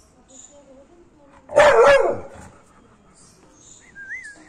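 A pit bull gives one loud bark about a second and a half in.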